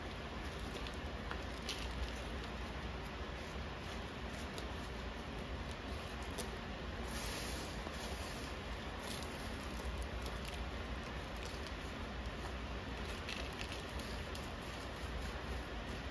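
Soft rustling and pattering of loose potting soil being pushed and pressed by hand into a plastic nursery pot, over a steady background hiss and hum.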